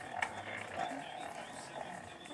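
A baby of a couple of months cooing, making a few short vocal sounds.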